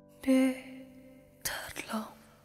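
A breathy, whisper-like voice sounds twice: a short burst about a quarter second in, and a longer falling phrase in the second half. It comes over the faint fading tail of a sustained chord, in a quiet stretch between sung passages of pop music.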